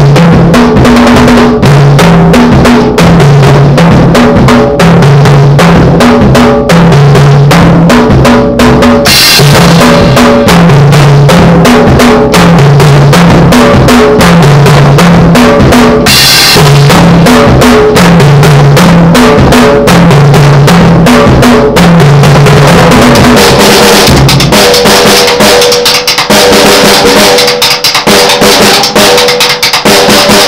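Acoustic drum kit played in a fast, very loud solo: dense strokes on the toms, bass drum and snare, with cymbal crashes about nine and sixteen seconds in. Toward the end cymbal wash builds under rolls on the higher toms.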